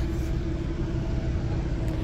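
A steady low rumble with a faint constant hum underneath, with no knocks or clicks.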